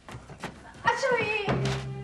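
Shouted voices with a dull thump of a scuffle, then background music with held notes comes in about three-quarters of the way through.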